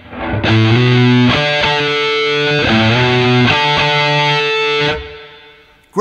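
High-gain distorted electric guitar: a quick slide up the low E string from the fifth to the seventh fret, a stand-in for a whammy-bar scoop, with the notes ringing between slides and dying away near the end.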